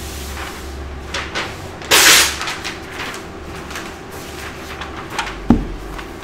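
Objects being handled on a work table: scattered clicks and taps, a short loud rustling clatter about two seconds in, and a dull thump shortly before the end.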